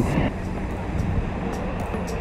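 Low, steady rumble of calm seawater moving against a camera at the water's surface, with faint background music coming in during the second half.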